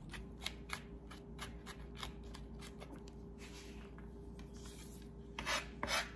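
Knife mincing garlic on a plastic cutting board: quick, irregular taps of the blade on the board, about three or four a second at first, then sparser, with a longer, louder stroke near the end.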